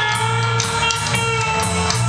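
Live rock band playing an instrumental passage: electric guitar holding long notes over bass guitar and a drum kit, with cymbals struck at a regular beat.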